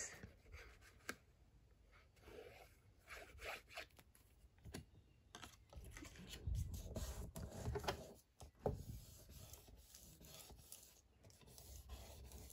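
Faint, scattered paper handling: small folded paper pieces rustling, tapped and rubbed flat on a table as they are glued, with a few soft knocks.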